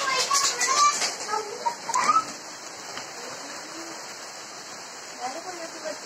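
Heavy rain falling steadily, an even hiss across the garden foliage, with voices over it in the first two seconds and faintly again near the end.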